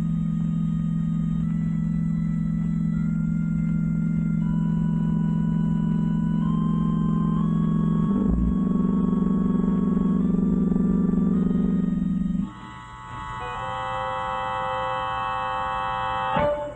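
Organ music underscore: a low held drone under a slow line of higher notes that steps up and down, then about twelve seconds in the drone drops out, leaving a high sustained chord.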